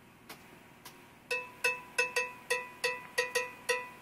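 Cowbell played in a quick syncopated rhythm, about ten short ringing strikes starting just over a second in, after two faint clicks.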